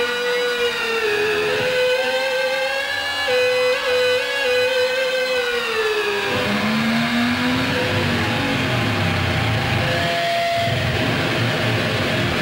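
Live rock electric guitar held against its amplifiers, sustaining one long, high, whining note with many overtones that slides down in pitch about six seconds in. A low, rhythmic guitar-and-bass rumble then takes over.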